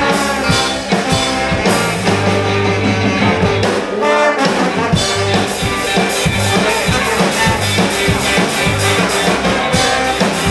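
Live ska band playing: a horn section of trombone and saxophone over electric guitars, bass and drums, with a short break in the bass and drums about four seconds in before the full band comes back.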